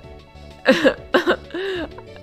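A woman laughing in a few short, breathy bursts, ending in a brief voiced rise and fall, over steady background music.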